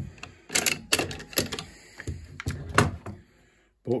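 Sharp metal clicks and clacks of an AKM-pattern rifle's bolt carrier being slid back along its rails and lifted out of the steel receiver. There are several distinct knocks over the first three seconds.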